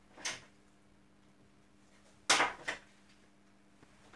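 Hand tools knocked and set down on a wooden workbench: a brief knock just after the start, then a louder clattering knock about two seconds in, with a smaller one just after it.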